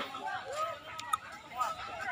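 People's voices calling out and talking over one another, with two sharp clicks about a second in.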